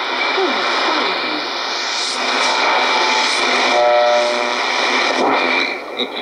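Icom communications receiver in AM mode being tuned across the 25-metre shortwave broadcast band: continuous hiss and static with whistles sweeping up and down, brief fragments of station audio and a few steady tones passing about two-thirds of the way through.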